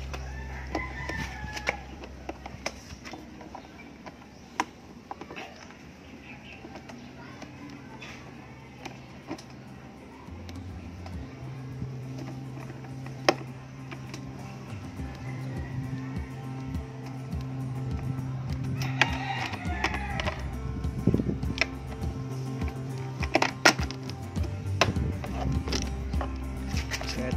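Background music with a steady low bass line, a rooster crowing twice (near the start and about 19 s in), and scattered sharp metal clicks as a 10 mm socket wrench works the bolt of a scooter's helmet hook.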